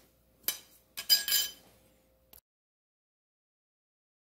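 A few sharp clinks, the last ringing briefly like struck metal, about a second in. The sound then cuts off abruptly to dead silence a little over halfway through.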